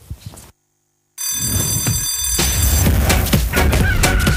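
Dead air for about half a second, then a TV programme's intro jingle starts. First comes a bell-like ringing, and from about two and a half seconds in, loud electronic music with a steady beat.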